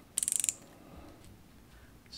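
A short burst of rapid ratcheting clicks, about a third of a second long, just after the start: the twist mechanism of a gold pen-style nail gel applicator being turned to push out the gel that helps gems stick.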